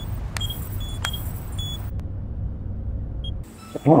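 Low steady engine rumble with several short high electronic beeps from a handheld scanner, mostly in the first two seconds. The rumble cuts off shortly before the end.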